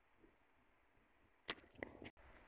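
Near silence: room tone, broken by one short sharp click about one and a half seconds in and a fainter tick just after.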